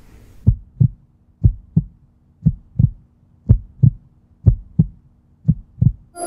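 Heartbeat sound effect: paired low thumps, lub-dub, about one pair a second over a faint steady hum.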